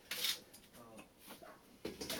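Black plastic seedling cell tray handled: a brief rustling scrape of plastic and leaves a quarter-second in, then a sharp knock as the tray is set down on a wooden table near the end.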